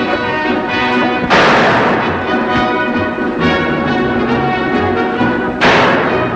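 Orchestral film score holding sustained chords, cut twice by a sudden loud crash, about a second in and again near the end.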